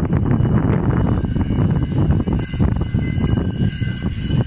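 Harness bells jingling on a team of mules, over a steady low rumble with scattered knocks.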